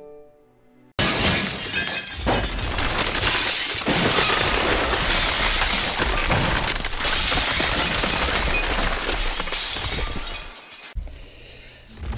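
Glass-shattering sound effect: a sudden crash about a second in, followed by a long run of breaking glass over music, fading near the end.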